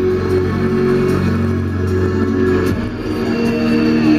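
Metal band playing live on an open-air stage: distorted electric guitars and bass holding long sustained chords, shifting to a new chord about three seconds in.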